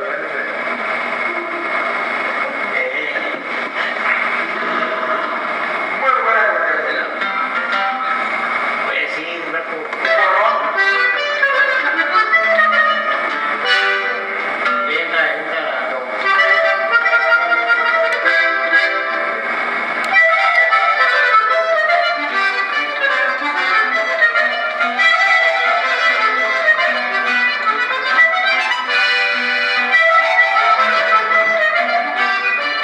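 Button accordion playing a conjunto tune live in the room, louder from about ten seconds in and again near twenty, with people talking over it.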